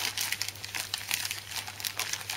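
Clear plastic wrapping around a trading card starter pack crinkling as it is handled, a dense run of small crackles.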